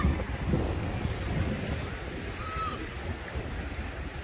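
Wind buffeting the microphone over the steady wash of small sea waves on the shore.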